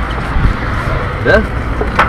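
Wind buffeting an action camera's microphone high on an exposed tower, a steady low rumble.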